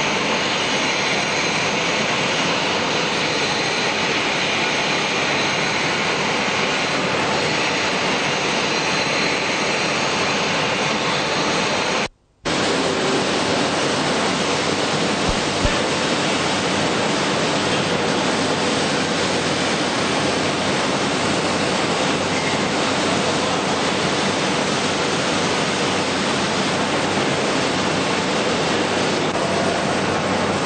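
A steady, even rushing noise with no distinct tones, broken by a brief dropout to near silence about twelve seconds in.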